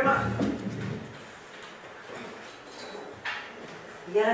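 A low bump of handling noise on a table microphone in the first second, then quiet hall room tone with a single sharp click about three seconds in.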